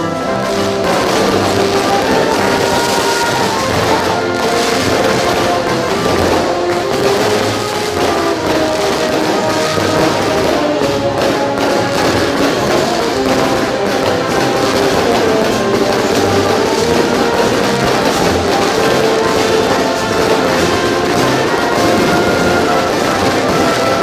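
Music playing continuously at a steady loudness, with shifting melodic lines throughout.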